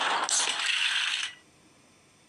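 Animated logo sound effect of the blocky logo letters clattering and scattering as they fall apart. The clatter is loud and dense and cuts off suddenly a little over a second in.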